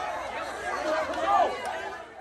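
A large crowd of people talking and calling out at once: many overlapping voices, with one voice rising louder about one and a half seconds in.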